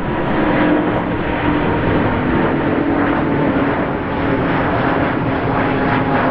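Airbus A350-900 climbing out after takeoff, its Rolls-Royce Trent XWB jet engines at climb power: a steady, loud engine noise with faint low tones that drift slowly in pitch.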